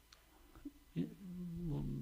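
A near-silent pause, then about a second in, a man's drawn-out hesitation sound held at one steady pitch, running on into his speech.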